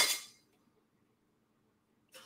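Sterling silver necklaces and pendants clinking as they are handled: a short metallic jingle that fades within the first half-second, then near silence.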